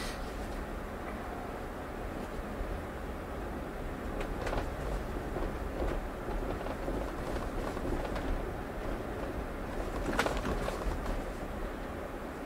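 Steady road noise inside a Tesla's cabin as it drives slowly on a snow-covered street, mostly tyres on packed snow, with a couple of faint clicks about four and ten seconds in.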